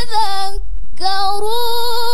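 A woman's solo Quran recitation in the melodic tilawah style: a long held note falls slightly and breaks off about half a second in for a short breath, then a new long phrase begins, held with slow wavering ornaments.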